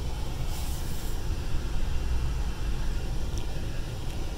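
Steady low rumble of a Ford F450's 6.7-litre Power Stroke V8 turbodiesel, heard from inside the cab as the truck moves slowly.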